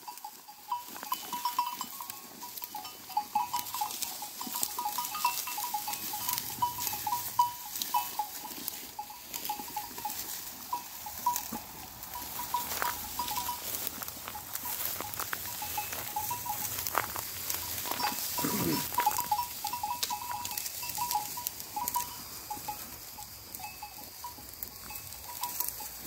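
Bells on grazing sheep clinking on and off as the flock moves, over a steady crackle of dry wheat stalks being pushed through and eaten.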